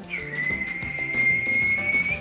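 One long, high whistled note, held steady for about two seconds with a short dip at its start and a small upturn at its end, over background music.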